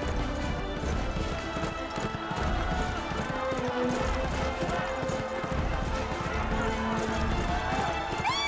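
A racehorse galloping on turf, its hoofbeats coming fast and continuous, over crowd cheering and a background music score.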